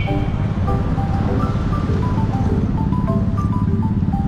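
Background music: a melody of short notes stepping up and down over a steady low beat.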